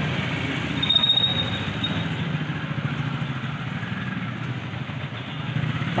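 An engine running steadily nearby with a low, even rumble; a brief high-pitched tone sounds about a second in.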